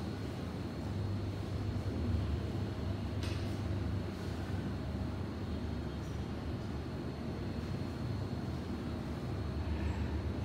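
Steady low rumble of background noise with a faint high tone over it, and a faint click about three seconds in.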